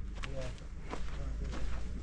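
Footsteps on bare, loose earth as someone walks along with the camera: a few soft steps over a steady low rumble.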